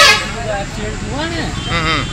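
Several people talking in the background, with a short loud burst at the very start.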